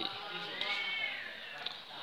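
A cat meowing once: a single drawn-out call, about a second long, that rises and then falls in pitch.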